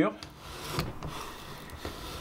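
Veritas router plane's flat blade shaving the bottom of a circular-saw-cut groove: a quiet, steady scraping rub of steel paring wood, taking off the ridges left by the saw teeth.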